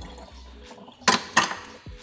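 Water draining faintly from a kitchen sink, with two sharp metallic clinks about a second in, a third of a second apart.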